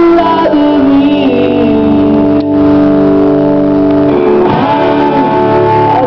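Live rock band playing loudly: electric guitars, drums and a singer, with chords held for a couple of seconds in the middle.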